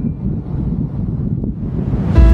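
Wind buffeting the microphone of an Insta360 X3 camera carried along while riding, a steady, gusty low rumble.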